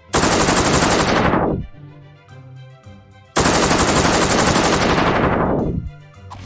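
Machine-gun fire sound effect played twice, each time through a low-pass filter swept shut: the rapid shots start bright and crisp, then lose their highs and sink into a dull muffled rumble before dying away. This is a 'shifting into slow motion' sound effect.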